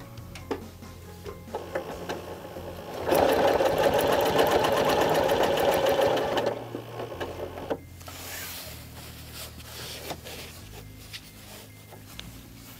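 Janome Continental M8 sewing machine stitching with its ruler foot, the needle speed governed by the Accurate Stitch Regulator as the quilt is pushed along the ruler. A fast, dense run of stitches starts about three seconds in and lasts about three and a half seconds, then the sound turns much fainter.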